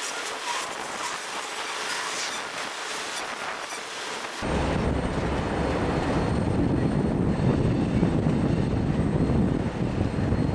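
Freight cars rolling past on steel rails, wheels hissing and lightly squealing with some clicking over rail joints. About four seconds in the sound switches abruptly to a heavy low rumble.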